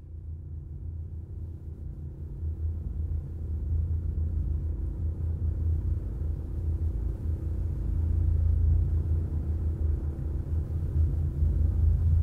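A deep, steady rumble in an intro soundtrack, slowly swelling louder, like a low drum roll or drone building toward an orchestral entrance.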